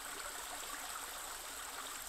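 Faint, steady rushing hiss like a gently flowing stream, with no tones or beat.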